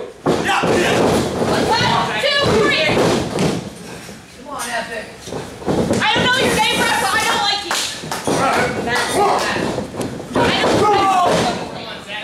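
Thuds and slams of wrestlers' bodies hitting the wrestling ring canvas, mixed with shouting voices in a large room.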